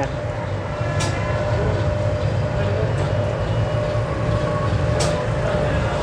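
Steady low machine hum with a faint steady whine above it, broken by two short clicks, about a second in and near the end.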